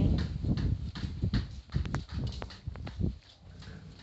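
Irregular footsteps on a hard tiled floor, mixed with a few sharp clicks and knocks. The sounds thin out in the last second.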